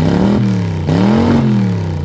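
A car engine revved twice in quick succession, its pitch rising and falling each time.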